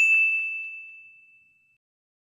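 A single bright ding, likely an edited-in sound effect, laid over the photo: a sharp strike followed by one clear high tone that fades out over about a second and a half.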